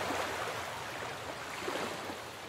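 Ocean surf: an even wash of waves breaking on a beach, with no music.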